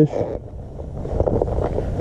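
Wind rumbling unevenly on the camera's microphone, a low noise that swells after about a second, over the outdoor air of a shallow river.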